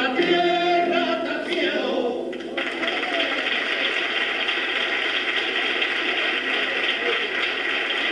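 A man singing solo, his sung line ending about two and a half seconds in, followed by steady applause.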